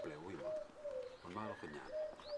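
A dove cooing: a run of soft, single-pitched notes, each sliding a little downward, repeated every half second or so, with a man's voice in short phrases between them.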